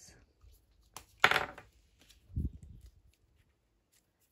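Paper crafting handling: a click and a short rustle of card about a second in, then a soft knock on the wooden tabletop as an item is picked up or set down.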